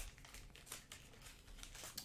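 Faint crinkling and small clicks of trading cards and their packaging being handled.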